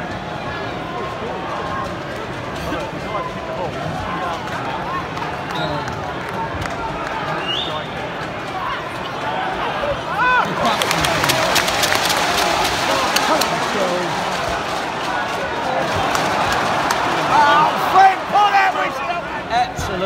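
Football stadium crowd noise: a dense mass of many voices. About halfway through, a spell of crowd clapping joins in, and a few louder shouts rise out of it near the end.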